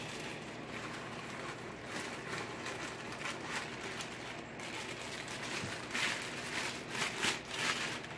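Dry cake mix pouring from its plastic inner bag into a stainless steel bowl, a soft steady hiss. The bag crinkles and rustles louder near the end as it is shaken out.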